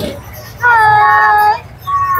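A high voice sings one long, steady note for about a second, starting about half a second in.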